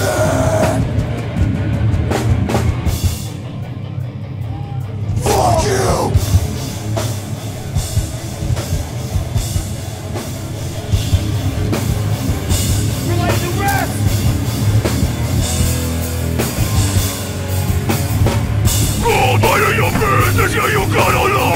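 Live hardcore band playing loud, with electric guitar and drum kit. There are short shouts about five seconds in, around thirteen seconds, and again near the end.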